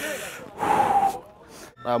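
A person's sharp, breathy gasp or exhalation, a loud hiss lasting well under a second that begins about half a second in.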